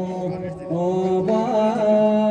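Folk music with chant-like singing: long held notes that dip briefly about half a second in, then resume with slight bends in pitch.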